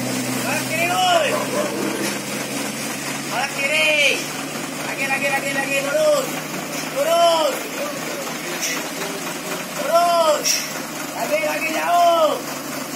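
A truck's diesel engine running low, fading after about two seconds, with repeated short, high, rising-and-falling shouts from people about every one to two seconds.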